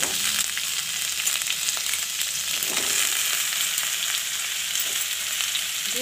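Sliced ivy gourd and potato sticks sizzling in hot oil in a kadai. The hiss jumps up as the vegetables go in and then holds steady and loud.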